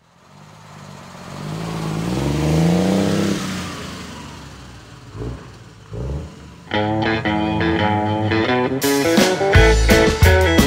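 A motor vehicle engine revving up, rising in pitch and loudness, then fading away, followed by two low thumps. About seven seconds in, a country-rockabilly band starts with guitar, and drums come in near the end.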